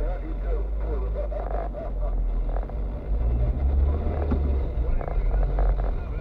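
Car driving, heard from inside the cabin: a steady low engine and road rumble, with a voice talking over it.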